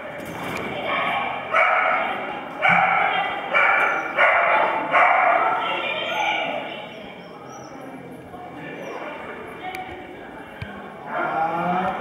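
A dog barking repeatedly, about five loud barks in quick succession in the first half, over the murmur of people in a large reverberant hall.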